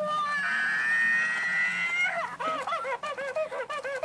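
Plush toy monkey's small speaker playing a recorded monkey screech, held for about two seconds and rising slightly, then a quick run of short hooting chatter calls. It is the toy's cranky reaction to having its banana taken away.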